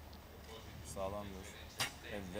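Compound bow shot: one sharp snap of the string as the arrow is released, near the end.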